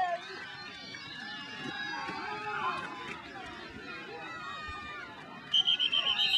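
Crowd voices chattering in the stands during a football play, then near the end a referee's whistle trills loudly, blowing the play dead.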